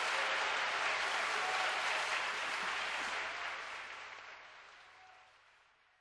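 Audience applause that holds steady, then fades out gradually over the last three seconds.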